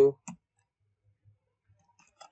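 A few faint computer keyboard key clicks as a short expression is typed, the last near the end, after a spoken word ends in the first moment.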